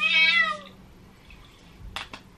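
A cat meowing once: a single call under a second long that rises and then falls in pitch. A short sharp click comes near the end.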